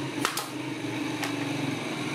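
Motor-driven spindle drum running with a steady hum, with a couple of sharp clicks from the metal comb and brush about a quarter second in.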